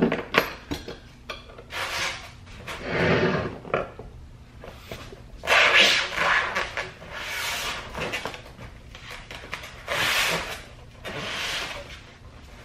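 A removed car seat being handled and turned over. Its steel seat rails and frame give a series of knocks, rattles and scrapes, with short pauses between them.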